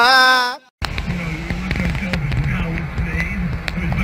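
A high-pitched yell that rises and falls, cut off abruptly in the first second, followed after a brief gap by a low wavering hum with two sharp clicks, one just after the gap and one near the end.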